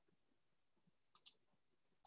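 Near silence broken by two quick, faint clicks a little over a second in.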